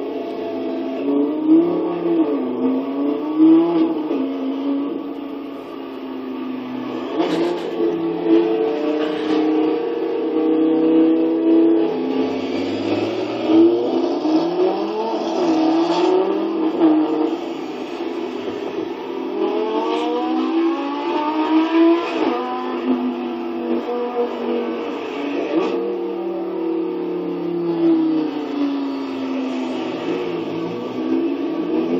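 Supercar engines accelerating hard in repeated runs. The engine pitch climbs and drops again and again with the gear changes, and a few sharp cracks come at some of the shifts. The sound comes from a video played on a screen and picked up again by a phone.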